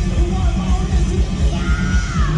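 A three-piece rock band of drums, bass and voice playing live and loud, the drums and bass dense and driving, with a yelled vocal line near the end.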